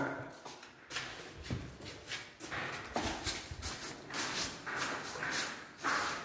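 Light, irregular knocks and scuffs, starting about a second in, as a flush-fitted wooden door hidden in wood wall panelling is pulled open.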